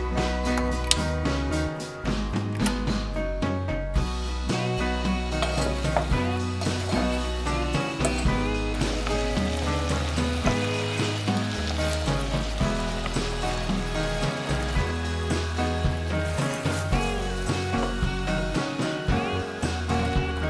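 Background music, with diced apples and raisins sizzling as they fry in a saucepan underneath it.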